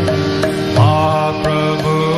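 Devotional kirtan music: a sustained chord drones throughout while a singing voice slides up into held notes about a second in and again near the end, over light drum and hand-cymbal strokes.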